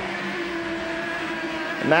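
Formula A racing kart's 100cc two-stroke engine held at high revs, a steady high-pitched note. Commentary starts again near the end.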